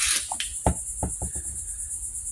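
A steady high-pitched insect chorus, pulsing evenly, with a few soft knocks and taps from handling scattered through it.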